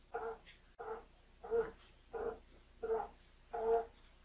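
Large screw cap on a Star Lube-Sizer's pressure assembly being twisted loose by a gloved hand: about six short squeaks, one with each turn, roughly every two-thirds of a second.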